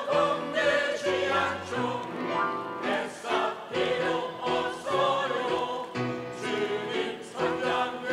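Mixed choir of men and women singing a Korean gospel song in unison phrases over an instrumental accompaniment with steady bass notes.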